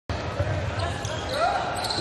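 Basketball game sound in a gym: crowd murmur with a basketball bouncing on the hardwood court, one sharp thump about half a second in.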